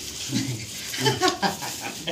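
A Simmental bull chewing and tearing fresh grass at the trough. A few short voice-like sounds come through about half a second in and again around a second in.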